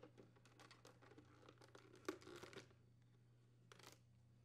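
Faint plastic clicks and rustling as the tabs are released and the plastic dispenser actuator paddle is worked free of the refrigerator's dispenser housing, with one louder click about two seconds in and a short rustle near the end.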